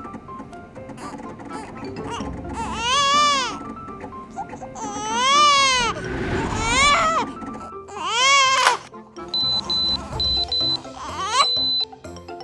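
A baby crying in four rising-and-falling wails over children's background music, then four short high electronic beeps and one longer beep near the end.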